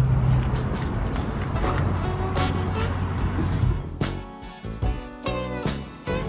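Background music, with a low steady hum under the first few seconds that drops away about four seconds in, leaving the music's clear held notes.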